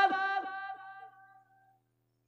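A man's chanted line ending on a held, high note that fades away over about a second and a half, then near silence.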